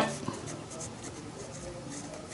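Marker pen writing on workbook paper, a quiet rub of the tip across the page as numbers are written.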